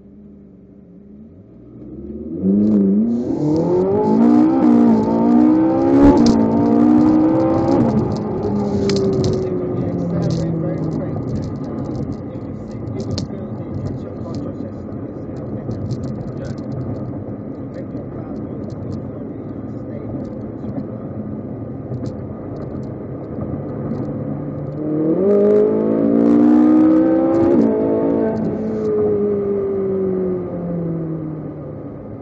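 Ferrari 458 Italia's 4.5-litre V8 accelerating hard through several quick upshifts, its pitch climbing and dropping back at each gear change. It then settles to a steady cruise before a second hard pull near the end.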